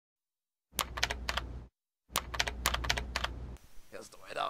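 Typing on a computer keyboard: two quick runs of keystrokes, the first about a second long and the second about a second and a half, with a short pause between.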